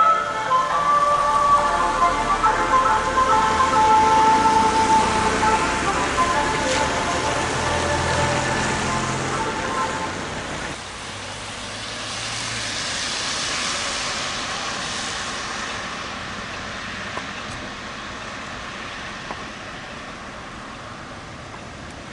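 Music played through a loudspeaker on a passing car, with the noise of traffic underneath; it ends about ten seconds in. After that, the hiss of car tyres on a wet road, swelling briefly as a car goes by.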